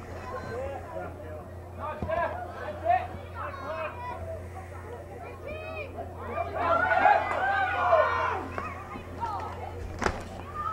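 Voices of several people calling and shouting, faint at first, swelling into a louder burst of overlapping shouts about two-thirds of the way through. A steady low hum runs underneath.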